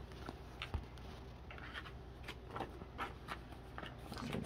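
Quiet handling sounds of trading cards being picked up and slid into plastic binder-page pockets: scattered light clicks and taps, with a short soft rustle of plastic about halfway through.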